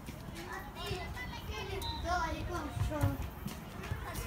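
Children's voices shouting and calling to each other during a youth football game, with a few dull thuds of the ball being kicked, about a second in and again near the three-second mark.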